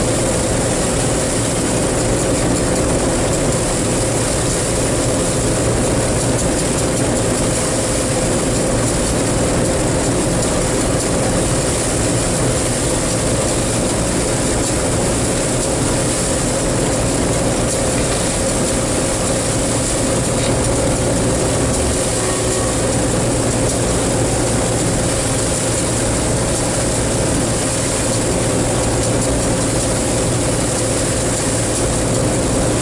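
John Deere 4400 combine running steadily while cutting soybeans, its engine and threshing and header drives making one constant hum with a steady whine over it.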